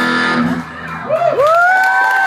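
A rock band's final chord rings out and stops about half a second in, then audience members let out high, held whoops.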